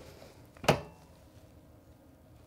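A single sharp clunk a little under a second in, as the handle of a George Knight DK20S swing-away heat press is pulled down and the press clamps shut for a pre-press.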